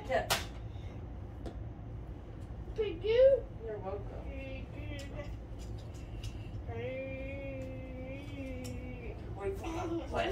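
Wordless vocal sounds from a person: a loud rising-and-falling exclamation about three seconds in, then a long, wavering held note about seven seconds in. A sharp click comes just after the start, over a steady low room hum.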